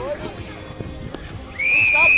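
Voices shouting during a tug-of-war pull, then near the end one loud, steady whistle blast lasting just over half a second.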